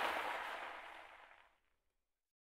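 The tail of a sound effect for an animated transition, a hissing noise that dies away over about a second and a half into silence.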